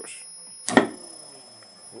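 Large electrolytic capacitor being discharged by shorting its terminals: one loud, sharp snap of the discharge spark about three quarters of a second in.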